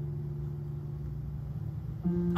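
Background keyboard holding a low sustained chord, steady and soft.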